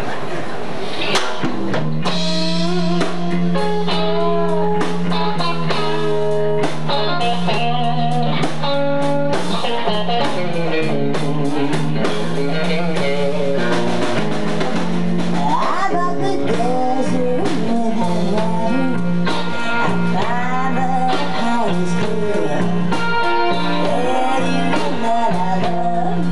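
Live band playing a slow blues: electric guitar lines over a steady bass guitar line and drum kit.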